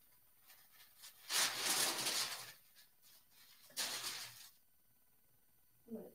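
Parchment paper and a cotton T-shirt being handled, rustling in two bursts: a longer one about a second and a half in and a shorter one near four seconds.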